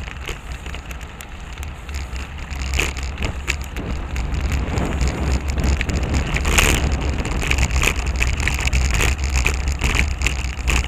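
Wind noise on a bicycle-mounted camera's microphone while riding, with tyre and road noise and many small rattling clicks as the bike rolls over the pavement. It grows louder a little under halfway through.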